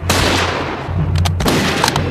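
Two rifle shots about a second and a half apart, each with a long echoing tail.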